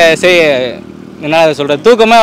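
Speech: a young man talking, with a short pause about a second in.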